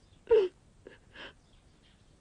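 A woman crying: one short wailing sob, falling in pitch, about a third of a second in, then a soft breath a little past the middle.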